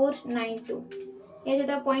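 A woman's voice speaking in short, drawn-out, indistinct syllables, one held for a moment about a second in.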